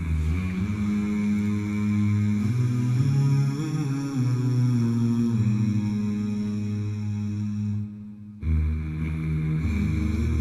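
A cappella intro of deep, sustained humming voices: layered low drones with notes shifting slowly above them, all made by human voices. The sound drops away briefly and the low drone comes back suddenly near the end.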